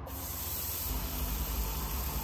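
Raw beef steak sizzling in an electric skillet: a steady hiss.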